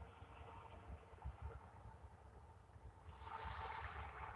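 Near silence: faint low rumble and hiss of night room tone, growing slightly louder about three seconds in.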